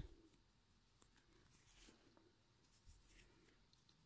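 Near silence: room tone with faint rustling of yarn and a crochet hook being worked.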